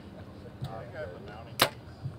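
Compound bow shot: one sharp crack as the string is released, about one and a half seconds in.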